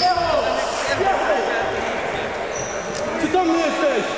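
Basketball game being played on a gym court: sneakers squeaking briefly and repeatedly on the floor and a ball bouncing, with people talking around it.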